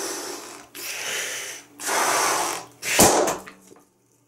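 A large balloon being blown up by mouth, three long breaths into it, then it bursts with a single loud pop about three seconds in.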